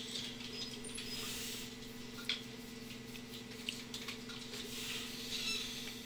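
Quiet room tone with a steady low electrical hum and faint hiss, broken by a few soft, short clicks.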